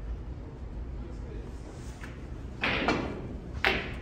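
Snooker balls knocking on the table, with two loud sharp knocks near the end as the object ball strikes the pocket jaws and stays out.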